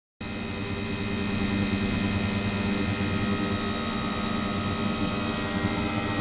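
A 28 kHz, 300 W immersible ultrasonic cleaning transducer running in a plastic water tank: a steady hiss and buzz made of several steady tones, with a thin high whine above.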